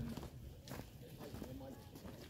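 Faint voices talking in the background, with a few light clicks and rustles.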